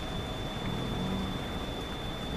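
Steady low outdoor background rumble with a thin, steady high-pitched whine running through it, and a faint low hum about a second in.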